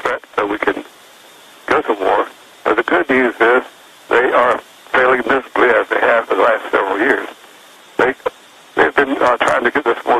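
Speech only: a man talking in phrases with short pauses, his voice thin like a telephone line.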